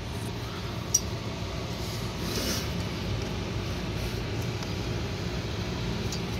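Steady mechanical hum of air-conditioning equipment running, with a single light click about a second in.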